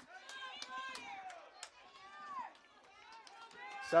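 A faint, distant voice speaking, much quieter than the commentary around it, with a few sharp clicks.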